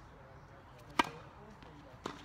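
A tennis racket hitting the ball on a serve: one sharp pop about a second in.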